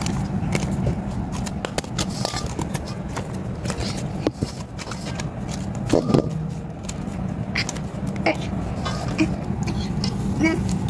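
Hands squishing and kneading sticky slime mixed with foam beads, making irregular wet squelches and crackly clicks over a steady low hum.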